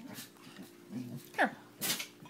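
A baby's short whimper that falls sharply in pitch about midway, amid low talk and a breathy sound near the end.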